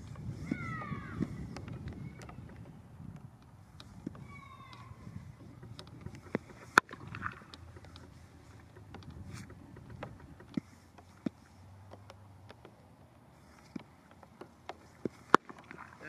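Gusting wind rumbling on the microphone, strongest in the first few seconds, with a few sharp knocks scattered through; the loudest knock comes about seven seconds in and another just after fifteen seconds. High, falling chirps sound near the start and again about four seconds in.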